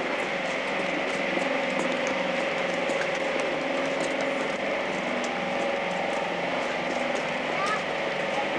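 A steady motor drone with people talking in the background.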